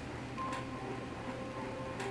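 Faint background music, a soft held chord of steady notes coming in about half a second in, over the room's hush.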